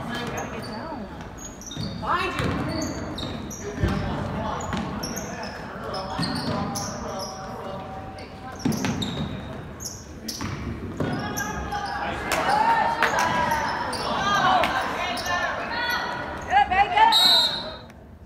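Basketball being dribbled on a hardwood gym floor, with sneakers squeaking and voices echoing in a large hall. A short, loud referee's whistle sounds near the end, stopping play.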